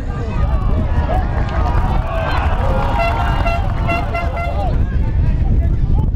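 Football spectators and players shouting, several voices overlapping and busiest midway, over a steady low rumble of wind on the microphone.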